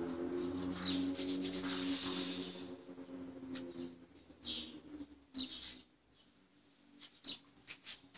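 A tune carried in a few long, steady held notes for about the first three seconds, then a quiet room with a few short hissy sounds.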